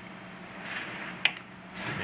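A single sharp click about a second in: the Duramax LB7 glow plug relay's solenoid pulling in as its control wire is grounded through a test lead, the sign that the relay is working.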